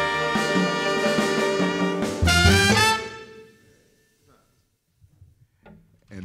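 Jazz quintet of trumpet, saxophone, piano, double bass and drums holding the closing chord of a tune, with a final accented hit from the whole band a little over two seconds in. The band cuts off about three seconds in, ending the tune, and the last notes die away.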